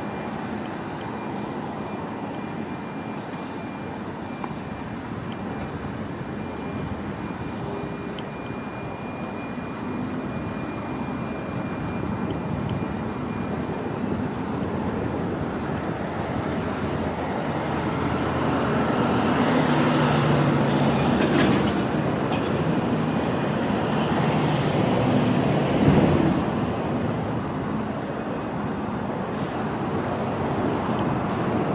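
Street traffic running steadily, swelling in the second half as a heavy vehicle goes by with a thin high whine; a short knock comes a few seconds before the end.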